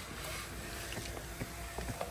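Quiet outdoor background: a steady low rumble and hiss with a faint steady hum, and a few light ticks.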